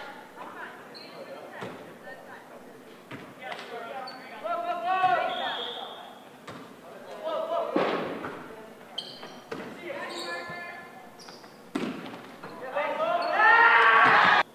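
A volleyball being bounced and struck in a gymnasium: several sharp knocks spread out over the seconds, one about halfway through as it is served. Players' shouts echo between them, loudest near the end.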